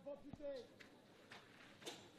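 Faint, distant shouts of footballers calling to each other on the pitch during play, followed by a few faint knocks.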